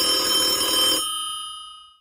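Telephone bell ringing: the ring cuts off about a second in and its tones fade away.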